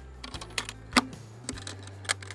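Metal latches on a wooden observation hive being fastened down: a handful of short, sharp clicks, the loudest about a second in.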